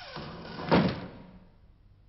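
A falling swoop in pitch at the start, then a single heavy thud about three-quarters of a second in that fades away over about half a second.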